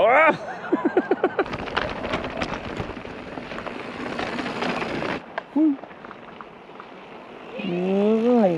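Mountain bike rolling over a rocky dirt trail: tyres crunching on loose stones and a steady rush of many small clicks and rattles, cutting off suddenly about five seconds in.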